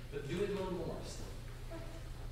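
A brief, quiet spoken remark in the first second, then hall room tone with a steady low electrical hum.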